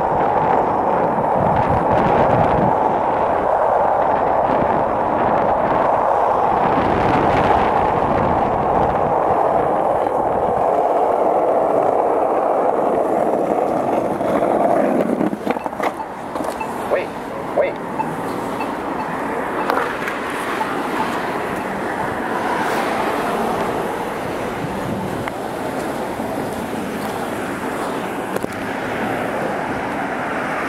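Skateboard wheels rolling on asphalt, a steady loud rolling noise that stops about halfway through with a few clicks and knocks, leaving quieter street noise.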